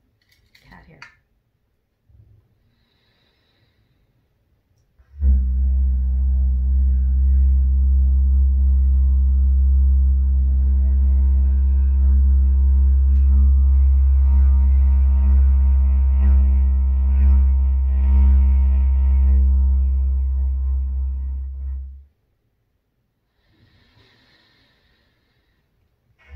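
Wooden didgeridoo without a bell end played as one long, steady, very low drone that starts about five seconds in and fades out after some seventeen seconds. Faint breaths come before it and just after it ends.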